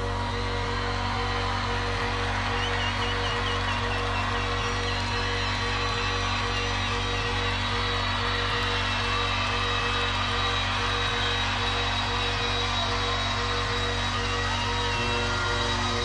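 Electronic music played live over a festival sound system: sustained synth chords over a steady low bass drone, with no drum beat. A few whoops rise from the crowd a few seconds in.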